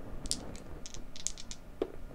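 A Blood Bowl block die rolled across the gaming table, a quick run of light clicks as it tumbles and settles.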